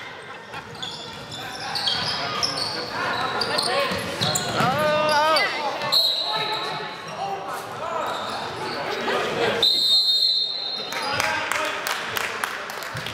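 Basketball game in a gym: players and spectators shouting and calling out across the echoing hall, with the ball bouncing on the court. Late on, a referee's whistle sounds once, a steady high blast of about a second.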